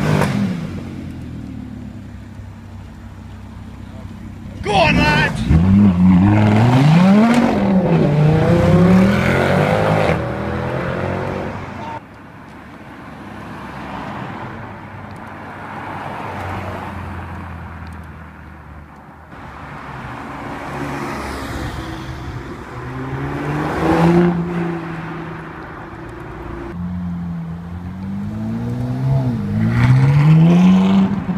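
Supercar engines pulling away: a sudden loud burst of revving about five seconds in, pitch rising and dropping through several gear changes, then quieter engine sound as cars pass, and another engine rising in pitch near the end.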